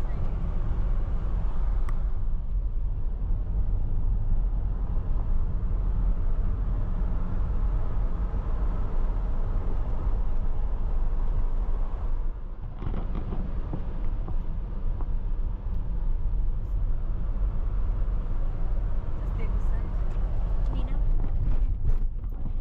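Car cabin noise while driving: a steady low rumble of engine and tyres on the road, dipping briefly about halfway.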